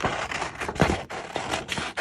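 Scissors snipping through thin magazine paper, a series of quick cuts about two or three a second, with the page rustling as it is turned.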